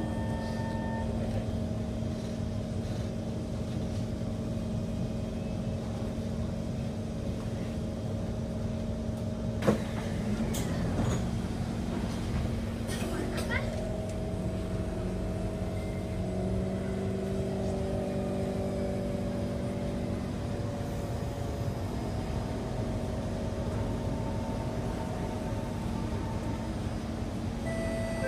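Inside an East-West Line MRT train running between stations: a steady rumble with a hum of a few held tones from the train's motors that shift in pitch a little over halfway through. A single sharp click about ten seconds in.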